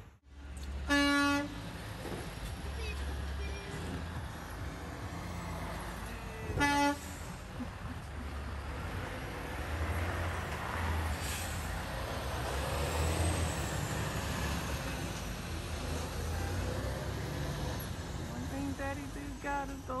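Two short horn honks, about a second in and again near seven seconds, over the low, steady rumble of a semi-truck driving off through the intersection.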